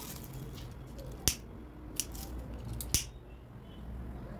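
Three sharp clicks, a little under a second apart, from a handheld lighter being struck, over a faint low hum.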